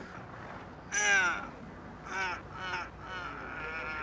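A man's strained groans during an arm-wrestling match: three cries falling in pitch, the loudest about a second in and two shorter ones close together a little after two seconds.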